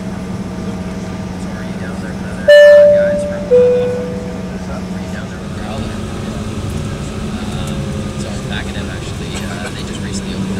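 Two-tone cabin chime on an Embraer E-170 airliner: a loud high 'ding' followed about a second later by a lower 'dong', each ringing and fading. Under it runs the steady hum of the cabin and the running engines.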